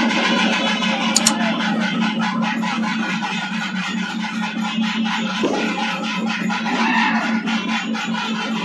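Live temple-festival melam: a reed wind instrument playing over fast, dense drumming, with a steady low drone underneath.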